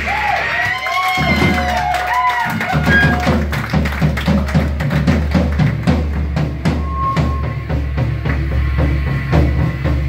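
Live rock band playing electric guitars and a drum kit: guitar notes bend and slide in the first few seconds, then the drums and bass come in hard about three seconds in and keep a fast, steady beat.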